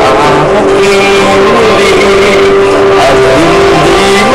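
A person singing one long held note with music behind it, loud on a webcam microphone; the note ends in a short glide near the end.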